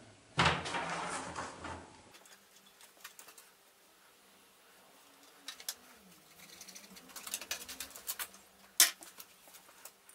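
Quiet handling noises at a lathe: a cloth rustling against metal for the first couple of seconds, then faint rubbing and scattered metal clicks, with one sharp click near the end.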